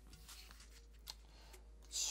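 Faint rustle of baseball trading cards being handled, with a couple of light clicks.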